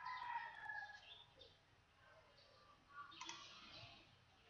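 Near silence, with a faint falling bird-like call in the first second and a few soft clicks.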